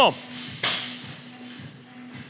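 A barbell power snatch at 185 lb being pulled from the hips and caught overhead, with a short noisy burst about two-thirds of a second in. A faint steady hum runs underneath.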